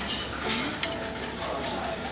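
A few light clinks of metal spoons and clam shells against each other and the dish, two sharper ones about a second apart, with voices underneath.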